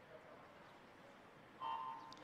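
Faint, steady poolside ambience, then near the end the electronic starting signal sounds: a sudden, steady single-pitched beep that starts a swimming race.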